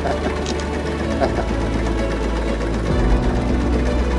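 Longtail boat engine running steadily with a rattling chatter; its low note shifts about three seconds in, as the throttle changes. Music plays along with it.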